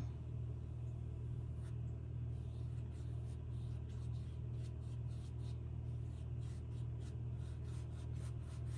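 Loaded paintbrush stroking oil paint onto a stretched canvas, a run of short soft scratchy strokes, over a steady low hum.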